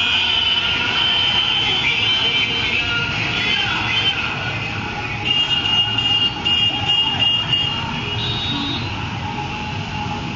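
A dense procession of motorcycles passing, engines running, with many horns sounding together. About halfway through there is a run of short repeated horn beeps.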